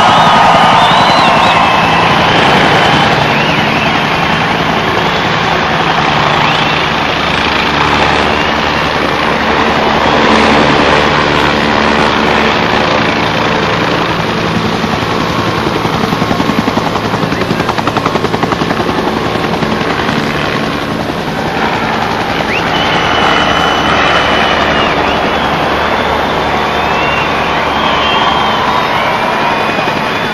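Helicopter flying low, its rotor blades beating fast and steadily over the engine's drone. A few high gliding, whistle-like tones sound over it near the start and again in the last third.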